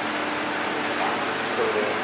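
A steady broad hiss of room noise, with a faint voice briefly about a second in.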